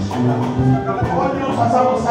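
Live church worship music: a choir singing with a band, a drum kit and hand percussion keeping the beat.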